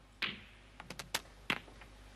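Snooker cue ball striking the yellow with a sharp click, followed about half a second later by a quick run of lighter clicks and knocks as the balls travel on and the yellow is potted.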